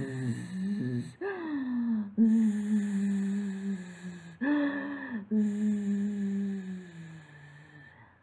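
A woman's voice acting out snoring with long buzzing 'zzzz' sounds, three of them, each separated by a shorter voiced sound that rises and falls in pitch. The buzzing sinks slowly in pitch and fades near the end.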